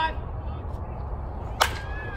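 Baseball bat hitting a pitched ball: one sharp crack about one and a half seconds in.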